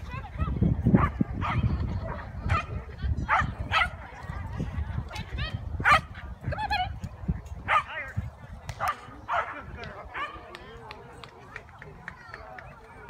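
Small dog barking repeatedly in short, sharp yips, roughly once a second, while running an agility course. The barks fade away near the end.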